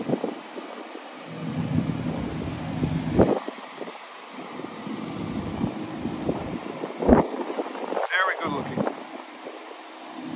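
Aston Martin DB11 idling, a low steady hum that rises and fades as the microphone moves around the car. There is a single sharp knock about seven seconds in.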